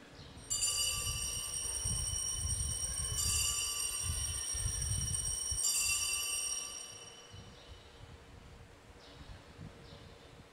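Altar bells, a cluster of small bells, rung three times about two and a half seconds apart, ringing on between strikes and dying away by about seven seconds in. This is the ringing that marks the elevation of the chalice just after the consecration.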